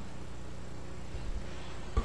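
Steady low electrical hum with a faint hiss: the room tone of the meeting's sound recording during a pause in the discussion.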